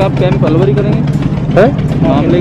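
Voices talking over the steady low hum of an idling engine.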